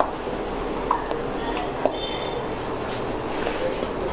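Metal spoon stirring a paneer and sauce mixture in a steel bowl, with a few light clinks against the bowl over a steady background hum.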